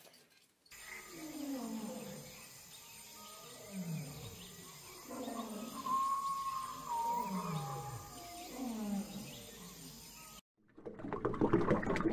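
A series of deep roar-like calls, each falling in pitch, about one a second, with a higher, longer held note about halfway through.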